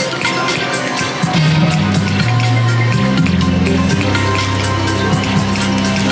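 Electronic game music from a Wheel of Fortune video slot machine while its reels spin, with sustained low notes that change pitch every second or so.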